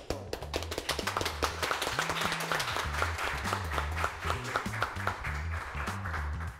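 A few people clapping their hands in steady applause, over background music with a repeating bass line.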